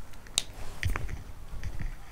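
Handling noise: a few light, irregular clicks and soft knocks.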